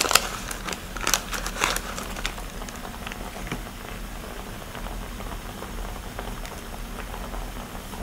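Heavy cream sauce simmering and bubbling in a frying pan over a portable gas burner, a steady faint crackle. A few sharp clicks and taps come in the first two seconds.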